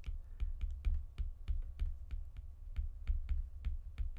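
Stylus tip tapping on a tablet's glass screen during handwriting: a quick, irregular run of light clicks, about four or five a second, over a low steady rumble.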